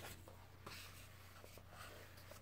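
Near silence with faint paper rustling and a light click as the pages of a book are handled and turned.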